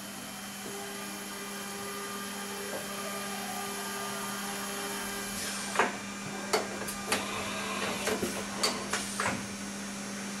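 Haas CNC vertical mill moving its table back with a steady motor whine over a constant hum. It then changes tools: a run of sharp clunks and clicks from about halfway through as the tool changer swaps a drill into the spindle.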